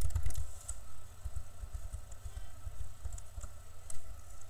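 Computer keyboard keystrokes: a quick cluster of taps in the first half-second, then scattered single key presses.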